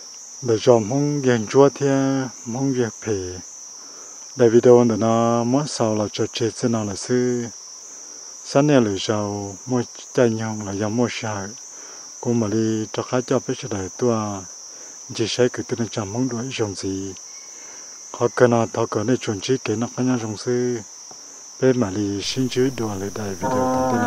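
A steady, high insect chorus, with a man's voice over it in phrases separated by short pauses; the voice is the loudest sound.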